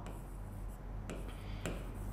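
Faint scratching of writing on a board as a word is written out by hand, with a few small ticks of the writing tip.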